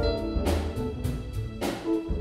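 A live jazz combo playing: upright bass and electric keyboard under a horn, with drum and cymbal hits about half a second in and again near the end.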